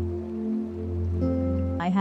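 Soft new-age background music of sustained, steady held notes that move to a new chord about a second in. A voice starts speaking right at the end.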